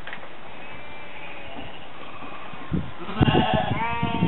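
A Shetland sheep bleats, one long call starting about three seconds in, with low bumps of handling just before it, over a steady background hiss.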